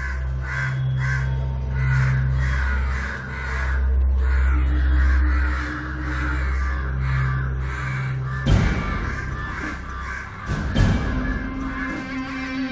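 A flock of crows cawing over and over, over a low, steady drone of film score; two heavy booming hits come in during the second half.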